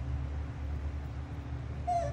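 Steady low background hum, with a short high-pitched squeak just before the end.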